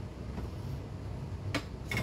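A low steady hum, broken about a second and a half in by two short, sharp knocks of things being handled on a wooden table.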